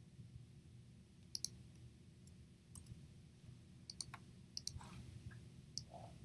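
Faint, scattered clicks of a computer mouse and keyboard, about half a dozen over a few seconds, over a steady low background hum.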